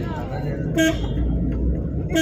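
A vehicle horn gives one short toot a little under a second in, over the low rumble of the vehicle driving.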